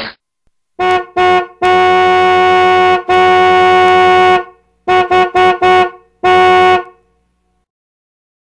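A car horn honking on one steady pitch in a rhythm: two short toots, two long blasts, four quick toots and a final toot.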